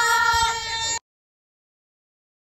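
Teenage girls screaming together in one long, high-pitched, held scream that cuts off suddenly about a second in.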